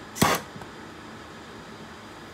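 A single sharp slap about a quarter second in as a fly is swatted, followed by a steady low background hiss of room noise.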